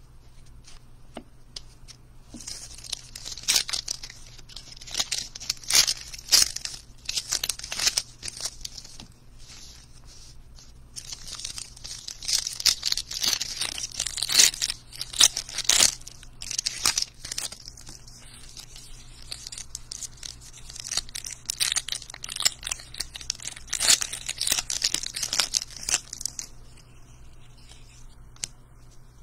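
Thin plastic crinkling and crackling as baseball cards are handled, in three bouts of several seconds each with sharp crackles and quieter card handling between.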